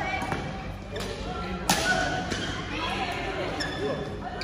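Badminton rackets striking the shuttlecock several times in a doubles rally, the sharpest hit about a second and a half in, with voices around the hall.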